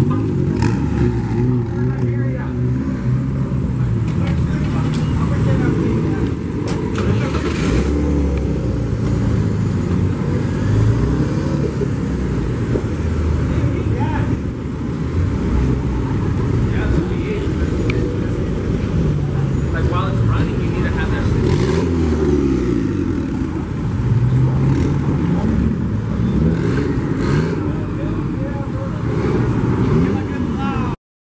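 Cars driving slowly past one after another, their engines running, with one engine revving up and down about two-thirds of the way through, over people's voices.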